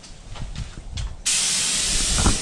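Compressed-air paint spray gun spraying paint: after a second of low, quiet rumble, the trigger is pulled and a sudden, loud, steady hiss of air and atomised paint starts and holds.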